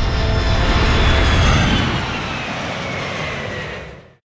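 An airplane flying past: its noise swells to a peak about a second and a half in, then falls in pitch as it moves away, and is cut off abruptly at the end.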